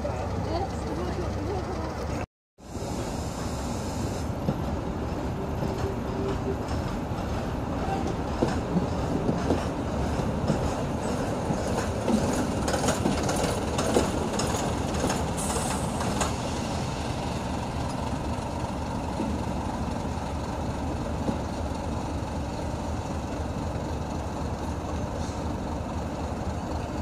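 Green first-generation diesel multiple unit running slowly into the station on its diesel engines. Through the middle stretch its wheels click over rail joints and pointwork.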